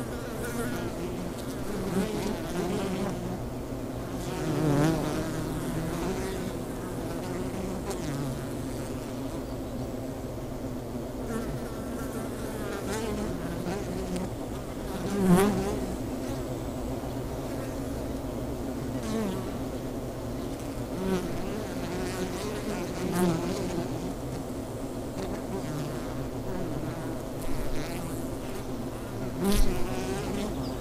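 Honeybees buzzing in a steady hum at their hive, with single bees passing close now and then, each buzz swelling and fading in a second or two; the loudest pass comes about halfway through, and another just before the end.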